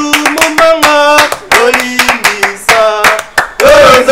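A small group of people singing together while clapping their hands in a steady rhythm.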